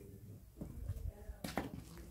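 A few faint footsteps on a floor strewn with grit and ceramic debris.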